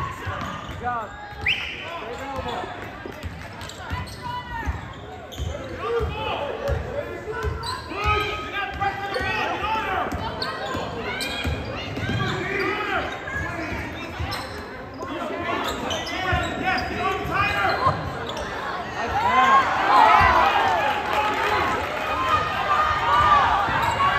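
Basketball game play on a hardwood gym floor: a ball bouncing on the court and sneakers squeaking as players cut and run, with a thick run of squeaks near the end as the players sprint up the floor. It rings in the large gym.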